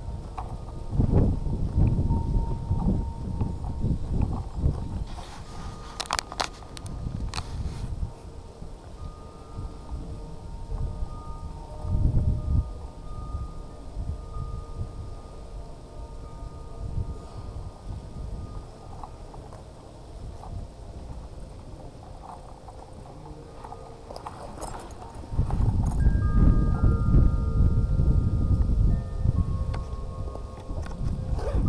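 Wind buffeting the microphone in irregular gusts, strongest near the end, with faint steady distant tones underneath.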